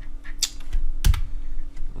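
A few key presses on a computer keyboard: short sharp clicks, the loudest a quick double click about a second in.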